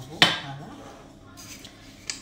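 A single sharp knock with a short metallic ring about a quarter second in: a tin flour shaker put down on a granite worktop. Faint handling noises follow.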